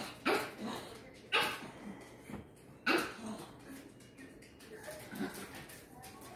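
Small black-and-tan dog barking up at a person: three loud barks in the first three seconds, then a fainter one about five seconds in. It is demand barking, the way this dog asks for food, water or a treat.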